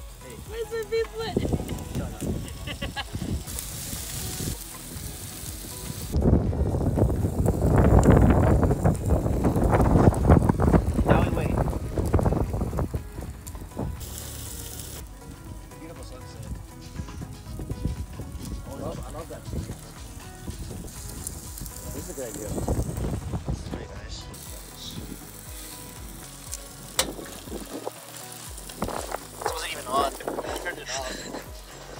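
Food sizzling as it fries, a continuous hiss that swells loudest for several seconds about a fifth of the way in.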